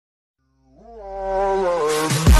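Buzzy synthesizer note swelling in from silence just under a second in, bending up in pitch and then sliding slowly down: the opening of electronic background music.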